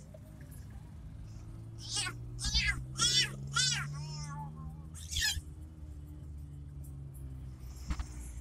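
Steady drone of the car's engine heard from inside the cabin, overlaid from about two to five seconds in by a run of about five loud, high, wavering cries of unclear origin.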